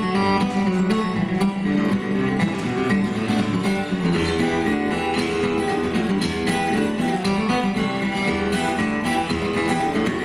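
Two acoustic guitars playing an instrumental tune together, with a steady, continuous run of quickly changing notes.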